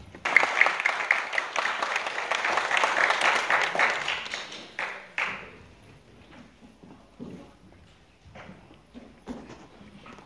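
Audience applauding: a burst of clapping that starts suddenly, dies away after about five seconds, then a few scattered claps.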